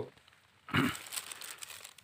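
Plastic crinkling and rustling, starting suddenly about two-thirds of a second in and running on irregularly.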